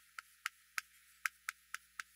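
Chalk writing on a chalkboard: a quick, irregular run of sharp, faint clicks and taps, about four a second, as the chalk strikes the board with each stroke.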